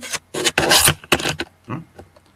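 Four or five short, irregular rubbing and rasping noises, close to the microphone.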